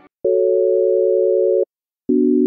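A steady electronic tone like a telephone dial tone, a few close pitches sounding together. It starts about a quarter second in, holds for about a second and a half, and cuts off sharply.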